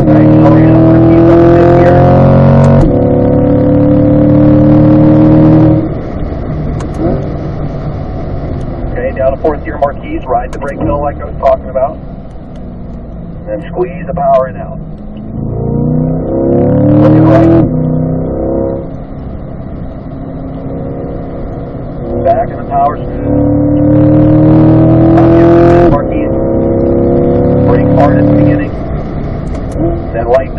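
Chevrolet C8 Corvette's 6.2-litre LT2 V8, heard from inside the cabin, revving hard up through the gears with quick paddle-shift upshifts about 3 s in and again about 26 s in. Between pulls it falls back to a quieter, lower run while braking for corners, then climbs again under full power.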